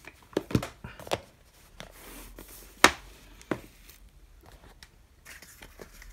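Plastic Blu-ray and DVD cases and their packaging being moved by hand: a few sharp clacks as cases knock together and are set down, the loudest about three seconds in, with light rustling between them.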